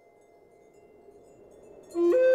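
A quiet pause in flute music: a faint high ringing tone lingers, with a few faint high tinkles. A flute note comes in loudly right at the end.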